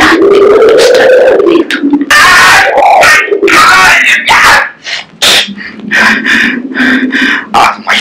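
Loud, strained voices of radio drama actors: a long drawn-out cry that rises and falls over the first second and a half, then rough, hoarse vocal sounds and speech.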